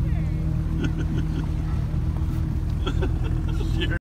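Motorboat engine running steadily at speed with a constant low hum while pulling a towable tube.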